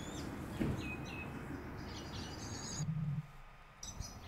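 Small birds chirping: a series of short, high calls and quick glides over a low rumble of wind or handling noise, which drops away briefly near the end.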